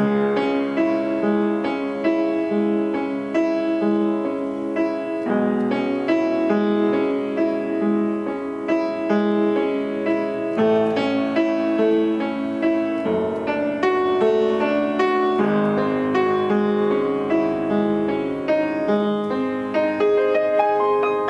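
William Knabe & Co. WV118 vertical grand piano, an upright with baby-grand string length and soundboard, played continuously: a flowing passage of struck chords and melody notes that ring on.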